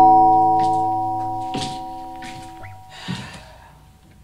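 Dramatic music sting: a struck, bell-like chord that rings on and slowly fades away over about three seconds.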